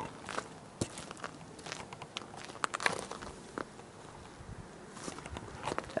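Footsteps crunching on a gravel driveway: scattered light crunches and clicks at an uneven pace.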